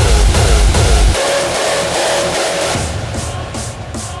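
Hardstyle dance track: a heavy kick-drum beat with a pitched synth hit on each beat. About a second in the kick drops out, leaving a held synth tone that fades into a breakdown with sweeping filtered sounds.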